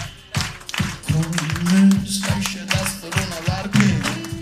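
Live band music: a strummed acoustic guitar and an electric guitar playing a steady rhythm over held bass notes, with no clear singing.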